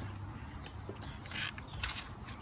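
Handling noises: gloved hands moving PVC pipe fittings on cardboard and grabbing a paper towel, with a couple of short rustles near the end over a low steady hum.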